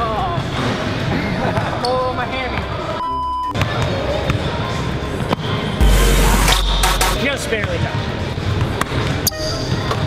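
Basketballs bouncing on a hardwood gym floor, with scattered voices and edited-in music underneath. A deep boom lasting over a second comes about six seconds in, as a player dunks.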